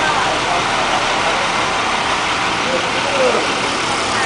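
Diesel engines of school buses idling, a steady engine noise, with faint voices in the background.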